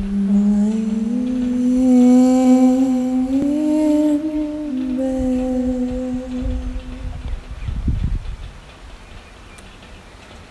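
A person humming one long, unaccompanied note that rises slightly in pitch and settles back, fading out about eight seconds in, as the opening of a sung song.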